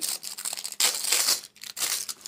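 Packing material crinkling and rustling as it is handled, in uneven bursts, louder about a second in and again near the end.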